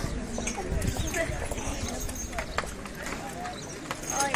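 Horses' hooves clip-clopping on a paved street, in irregular single strikes, with people talking in the background.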